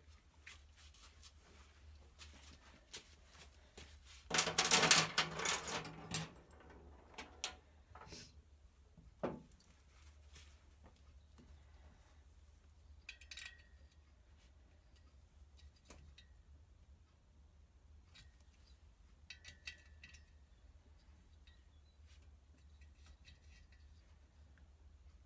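Small metal parts from a 2CV cylinder head, valve springs and washers, clicking and clinking as they are handled and set down on a workbench, a few with a short metallic ring. A louder rubbing, rustling sound runs for about two seconds about four seconds in.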